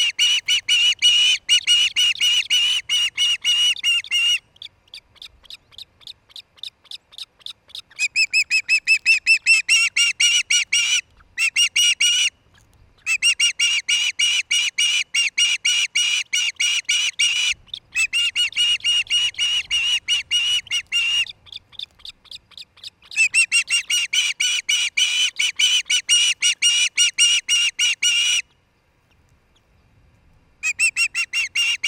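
Osprey calling close to the microphone: rapid trains of sharp, high chirps, several a second, in bouts of a few seconds with short pauses, one stretch fainter, stopping shortly before the end.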